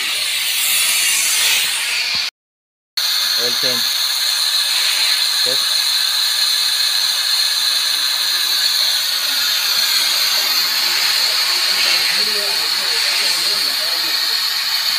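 Steady, loud hiss of compressed air with a high whistling edge, from an air-driven waste-oil extractor sucking oil out of a truck engine. The sound cuts out completely for under a second about two seconds in.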